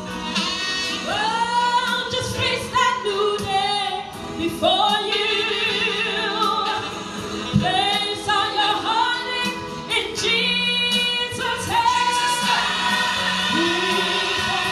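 Gospel song: a vocalist sings long, wavering held notes over musical accompaniment.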